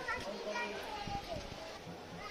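Faint background voices, a child's voice among them, over open-air ambience.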